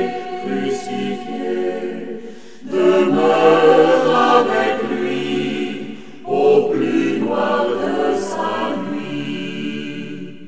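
Choir singing a French sacred song in sustained phrases. New phrases come in louder about three seconds in and again just after six seconds, and the singing fades near the end.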